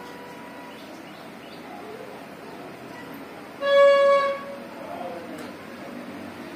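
A horn sounds once, a single loud steady note lasting under a second, over a low, constant background murmur.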